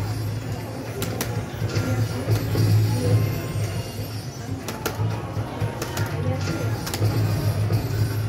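Bell Link slot machine playing its bonus-round music during the respins, with several short, sharp hits as bells land on the reels, over a low steady hum.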